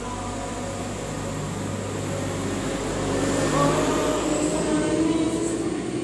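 A steady rushing noise swells about halfway through and eases near the end, largely covering a group of voices still singing faintly underneath.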